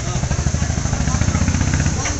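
A vehicle's engine idling with a steady, rapid pulse, growing a little louder toward the end.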